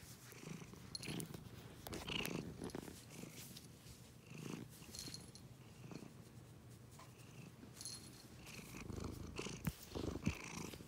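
Tabby cat purring while being stroked, a faint low rumble that swells and fades with each breath. A sharp click comes near the end.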